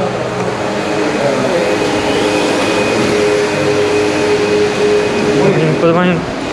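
Passenger elevator running: a steady whirring hum with a faint high whine over a loud rush of air, which stops about five and a half seconds in.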